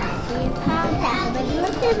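A young child talking, with music playing underneath.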